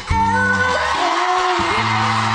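A woman singing with a live backing band. About a tenth of a second in, a loud, even wash of audience cheering and applause joins in and rises under the music.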